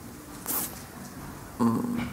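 A speaker's pause at a microphone: a short hissy breath about half a second in, then a brief voiced hesitation sound near the end, held on one pitch.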